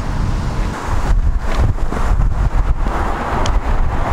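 Toyota Town Ace van driving slowly past, its engine and tyres heard under heavy wind buffeting on the microphone, which makes a strong, uneven low rumble.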